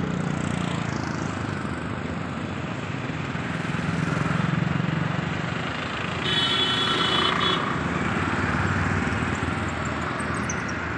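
Steady road traffic noise with a low engine hum. A vehicle horn sounds for about a second and a half, about six seconds in.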